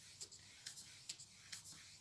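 Faint scratchy strokes of a flat paintbrush dragged side to side across a canvas, blending wet paint.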